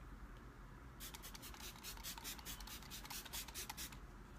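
Faint, quick scratchy rubbing strokes, several a second, starting about a second in.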